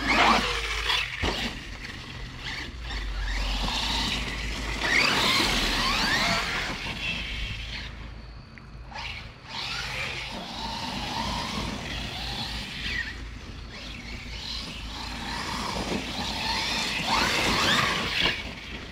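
Arrma Notorious RC stunt truck's brushless electric motor and drivetrain whining in spells as the throttle is applied and released, the pitch rising and falling with each burst of speed.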